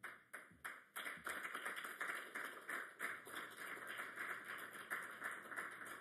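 Many camera shutters firing: a few separate clicks at first, then a dense, continuous clatter of rapid clicks.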